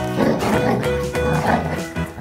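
Two golden retrievers growling as they wrestle in play, over background music.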